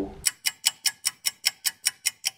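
Ticking-clock sound effect: crisp, even ticks at about five a second, starting a moment in and marking a countdown.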